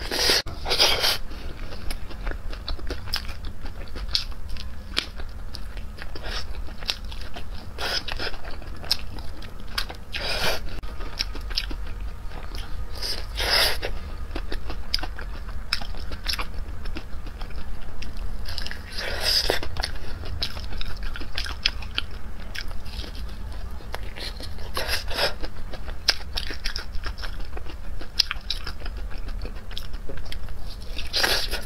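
Close-miked eating of crumb-coated fried chicken drumsticks: a crisp crunch at each bite every few seconds, with wet chewing between. A steady low hum runs underneath.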